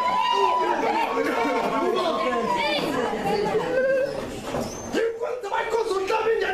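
Chatter of several voices talking over one another in a hall. A long steady high tone is held under the voices for the first half, and a lower held tone comes in near the end.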